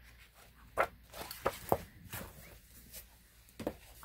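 Paper pages of a book being handled and the book moved aside: a string of short rustles and light knocks.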